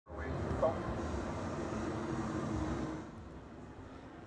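Steady low outdoor background rumble with a faint, distant voice in it, dropping away about three seconds in.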